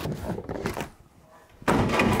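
A large cardboard box set down with a sudden thud near the end.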